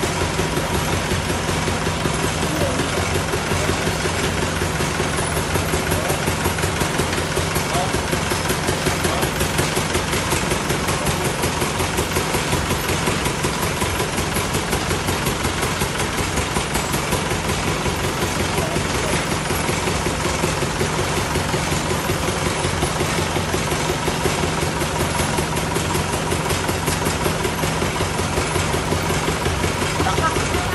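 Engine of a truck-mounted borehole drilling rig running steadily at a constant speed, a dense, even machine drone with a fast pulse, while the rig brings water up out of the borehole.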